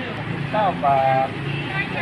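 A man speaking Thai, saying a price, over a steady low background hum.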